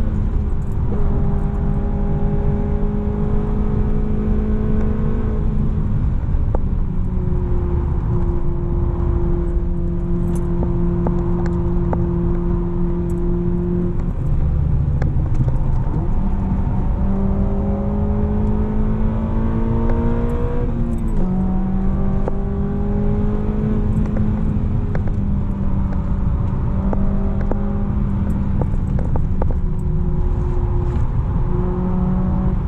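Honda Civic Type R's 2.0-litre K20 four-cylinder engine heard from inside the cabin, running hard at high revs with steady road and tyre rumble underneath. Its pitch holds for long stretches and drops sharply at gear changes about 6, 14 and 21 seconds in.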